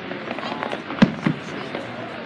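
Aerial fireworks bursting: a scatter of crackling from the stars, then a sharp bang about a second in and a smaller one just after.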